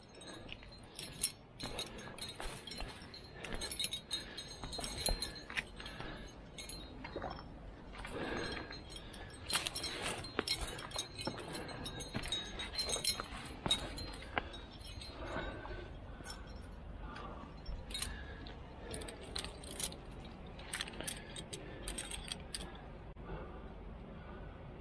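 A trad climber's rack of metal gear, carabiners and protection hung on the harness, jingling and clinking irregularly as the climber moves up the rock.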